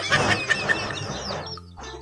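A group of young chicks peeping: many short, high chirps overlapping, thinning out about a second and a half in.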